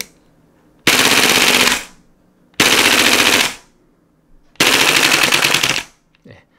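Tokyo Marui MTR-16 G Edition gas blowback airsoft rifle firing three full-auto bursts of about a second each, the bolt carrier cycling rapidly with each shot. The bursts use up the gas in its short magazine.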